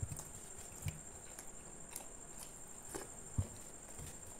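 Close-up eating sounds from someone eating with his hand: scattered small clicks and smacks of chewing and of fingers scraping curry gravy off a plate. A few soft thumps stand out, the loudest about three and a half seconds in.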